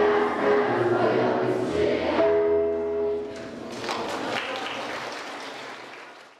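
A children's choir singing held notes; the song ends about three seconds in and applause follows, fading out near the end.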